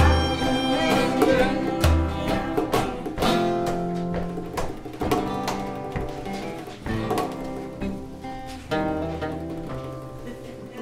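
Small acoustic string band of guitars and fiddle playing an instrumental passage of a gospel tune in a country/bluegrass style, growing quieter near the end as the song winds down.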